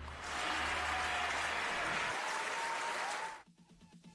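Recorded applause played as a break bumper, steady for about three seconds and cutting off suddenly.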